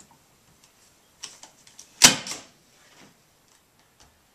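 A hand-operated staple gun fires once about halfway through, a single sharp snap as it drives a staple through plastic liner into a wooden 2x4 frame. A few lighter clicks come just before it.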